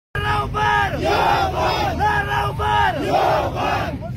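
A crowd chanting a slogan in unison: two short calls and then a long drawn-out one, with the pattern repeated twice.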